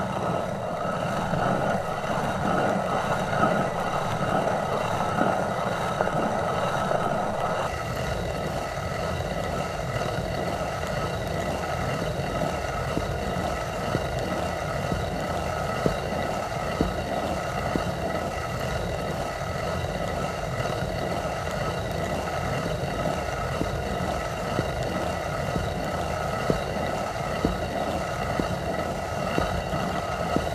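Hand-turned stone quern grinding grain: a steady rough rumble of the upper millstone turning on the lower one. A light knock comes about once a second in the second half, once per turn.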